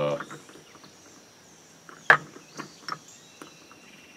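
Steady high buzzing of insects, with a few scattered clicks and knocks. The loudest knock comes about two seconds in.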